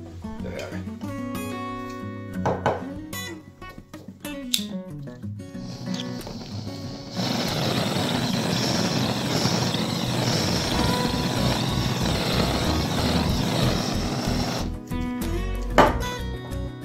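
Acoustic guitar music. About seven seconds in, a steady loud hiss starts from a gas lighter's flame burning the loose fibres off a hairy rope, and it cuts off suddenly after about seven and a half seconds. A sharp knock comes just before the end.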